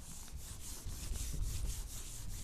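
Whiteboard duster wiped back and forth across a whiteboard, a faint scrubbing in quick repeated strokes as the marker drawing is erased.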